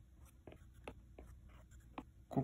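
Faint taps and light scratching of a stylus tip on a tablet's glass screen as quick hair strokes are drawn.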